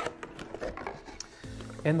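A cardboard product box being opened by hand: a sharp tap at the start, then a few light scrapes and ticks as the lid is lifted. Soft background music runs underneath.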